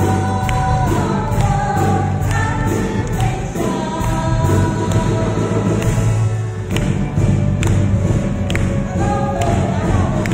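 A woman singing a song through a microphone and PA, backed by a live pop band with bass, guitars and drums. The audience claps along in time with the beat.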